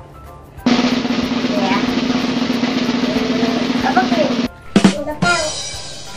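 Edited-in drum roll sound effect: a steady snare roll lasting about four seconds, cut off by a sharp hit, as a suspense cue before a guess is revealed. A short bright sound follows near the end.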